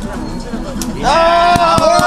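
Low chatter, then about a second in a man lets out a loud, long, high-pitched shout of "Oh!". Two sharp hand slaps land under the shout.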